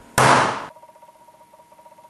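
A single loud bang, a harsh noisy crash lasting about half a second, that dies away into a faint low hum.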